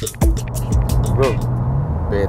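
A music beat cuts off right at the start, leaving a held low note that stops near the end. Under it is the steady hum of road and engine noise inside a car cabin at highway speed, with a short voice sound about a second in.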